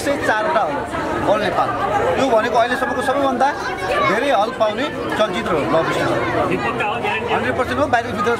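Speech only: a man talking, with the chatter of people around him.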